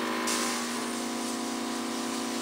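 Airbrush compressor of a portable oxygen infusion system running with a steady hum, with air hissing from the airbrush gun as it sprays oxygen activator; the hiss brightens about a quarter second in.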